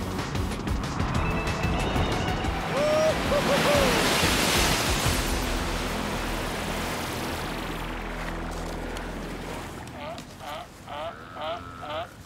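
Ocean surf and breaking waves rushing, swelling to its loudest about four seconds in and then slowly fading, under background music.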